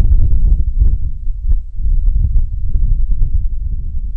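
Wind buffeting an outdoor microphone: a loud, uneven low rumble.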